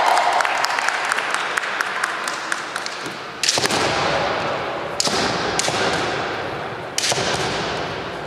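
Kendo bout in a large hall: a quick run of faint clacks, then four loud, sharp knocks one to two seconds apart, each echoing. These are the sounds of bamboo shinai and feet on the wooden floor.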